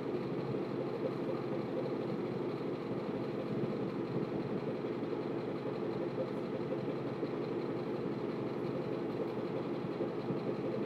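Steady low hum with a fainter hiss above it, even and unchanging, with no distinct events.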